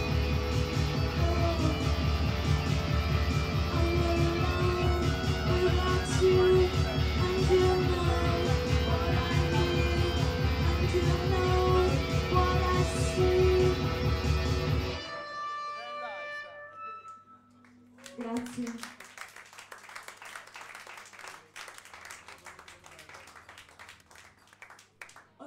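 Live band playing a song with electric guitar over a steady bass-heavy beat. The song stops suddenly about fifteen seconds in, a few notes ring out briefly, and the room goes much quieter.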